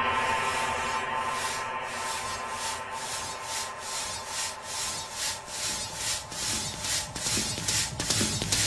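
Noisy electronic techno passage: short pulses of hissing noise repeat about three times a second, fading in and growing stronger over a fading held tone, building toward the beat.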